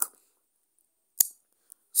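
A single sharp tap about a second in: a fingertip striking the smartphone's screen, picked up by the phone's own microphone while navigating between apps.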